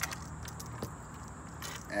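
Small clicks and clinks from a leather knife sheath being handled, a sharp one at the start and a few fainter ones after, over a steady low hum.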